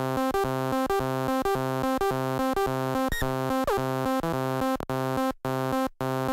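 Groovesizer DIY 16-step sequencer playing a looping pattern through its Auduino-based 8-bit granular synth: buzzy, pitched synth notes stepping in a steady rhythm, with a falling pitch glide a little over halfway through. Near the end short silent gaps fall between the notes.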